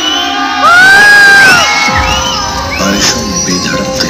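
Guests cheering and whooping over the dance music, with one loud, high whoop held for about a second near the start.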